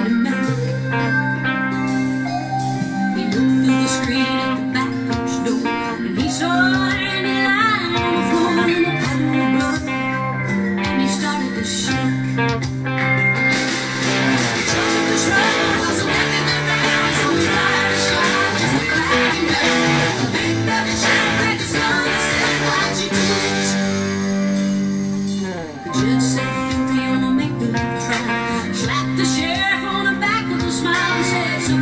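Instrumental section of a country song: a Fender Telecaster electric guitar in open G tuning, hybrid-picked, over a band backing, with wavering, bending lead notes through the middle of the passage.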